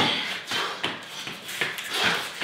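Feet and hands thudding and scuffing on rubber floor mats during a fast bodyweight exercise, a sharp knock at the start and then a string of irregular lighter taps and shuffles.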